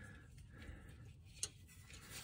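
Near silence, with a single faint click about one and a half seconds in.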